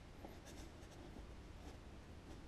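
Pencil drawing short lines along a steel ruler on a pad of graph paper: a few faint scratching strokes, the first about half a second in.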